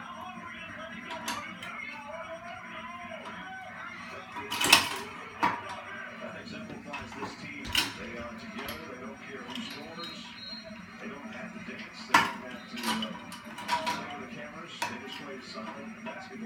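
Metal clanks and knocks from a home gym cable machine as a small child tugs and bangs its cable handle against the frame: a string of sharp irregular hits, the loudest about five seconds in. Television speech and music run underneath.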